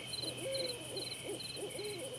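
An owl hooting several short times over crickets chirping in an even pulse, about two to three chirps a second.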